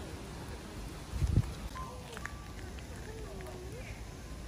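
Outdoor ambience: low wind rumble on the microphone with a stronger gust about a second in, and faint distant voices.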